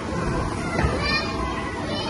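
Children playing in an indoor play area: a steady hubbub of young voices, with a high-pitched child's squeal about a second in.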